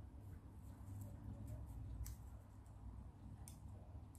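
Faint handling of a paper hoop glider: paper loops and a plastic drinking straw rustling and giving a few light clicks as the loops are adjusted on the straw, over a low rumble.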